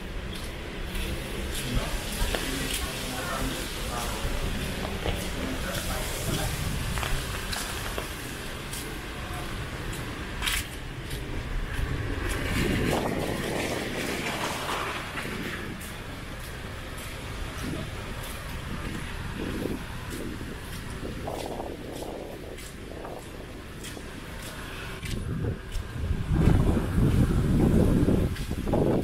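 Residential street ambience on a windy day: a van drives close past about halfway through, and near the end strong gusts rumble on the microphone and rustle the trees.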